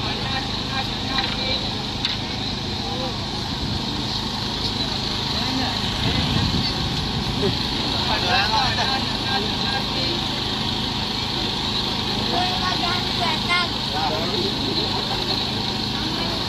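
Busy outdoor ambience: scattered background voices of a crowd over a steady hum of road traffic.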